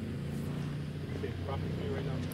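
A vehicle engine running steadily at low revs, a low hum under faint, distant voices.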